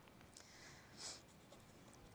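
Faint pen strokes scratching on paper as words are handwritten, the clearest stroke about a second in.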